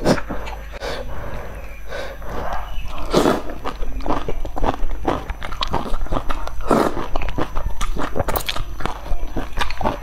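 Close-miked eating of broth noodles: wet chewing and smacking with many small clicks, and longer slurps about three and seven seconds in.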